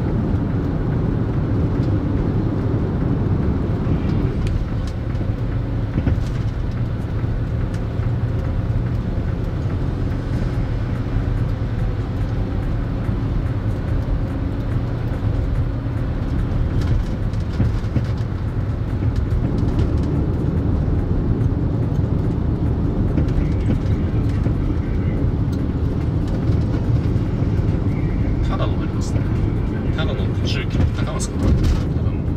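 Steady road and engine noise heard inside a moving car's cabin: low tyre rumble and engine drone while cruising.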